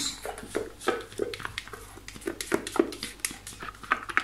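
Spatula scraping whipped egg white out of a Thermomix's stainless-steel mixing bowl into a ceramic bowl: an irregular run of short scrapes and taps against the metal, several a second.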